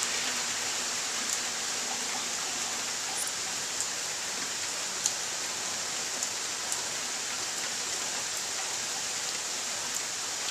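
Steady rain falling during a thunderstorm, with a few faint ticks of drops landing scattered through it.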